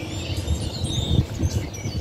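Birds chirping faintly in the background over an uneven low rumble.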